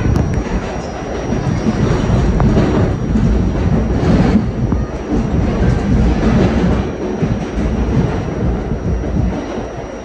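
R68-series New York City subway train running through a tunnel, heard from inside the front car: a loud, dense rumble of wheels on rail with clickety-clack over the rail joints. It eases slightly near the end as the train pulls into a station.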